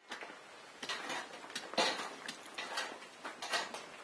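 Irregular clicks, knocks and scrapes of hand work on a building site with a dirt floor, about a dozen in four seconds, the loudest nearly two seconds in.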